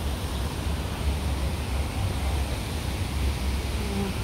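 Wind buffeting the phone's microphone: a steady, uneven low rumble over a hiss of outdoor noise.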